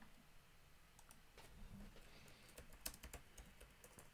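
Faint, irregular keystroke clicks of a computer keyboard being typed on, beginning about a second and a half in.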